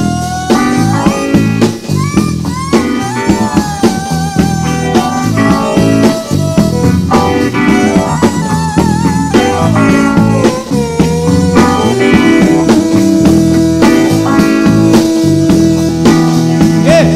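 Disco-funk band playing an instrumental passage: drum kit and bass under a lead melody that bends and wavers in pitch, settling into a long held note near the end.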